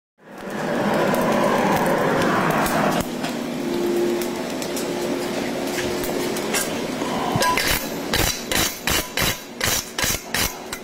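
A steady rushing noise fills the first few seconds. From about eight seconds in comes a run of sharp, evenly spaced blows, about two a second: a 2 lb hammer striking a steel stud punch as it is driven into a red-hot horseshoe on an anvil.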